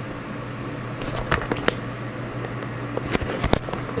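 Plastic shrink-wrap on a trading-card box crinkling as it is handled, in a few sharp, scattered crackles starting about a second in, over a steady low hum.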